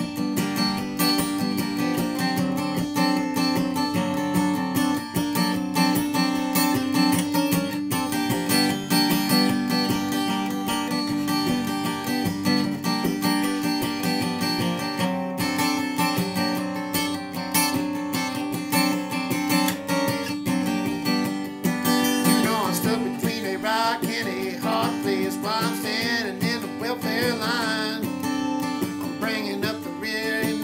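Steel-string acoustic guitar strummed with a pick, playing chords in a steady country rhythm. About two-thirds of the way through, a wavering higher melody line joins over the strumming.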